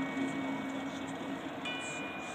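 A marching band's held chord dying away, with mallet percussion ringing on. A soft, high, bell-like note rings out near the end.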